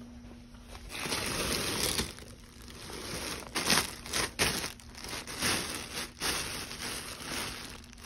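Thin clear plastic bags stuffed with plush toys crinkling and rustling as a hand presses, pulls and handles them. The rustling starts about a second in, with a run of sharper crackles through the middle.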